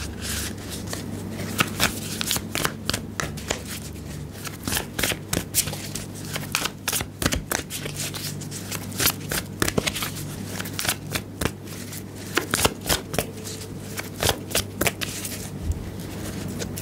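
A deck of tarot cards being shuffled by hand: a long, irregular run of quick card snaps and slaps.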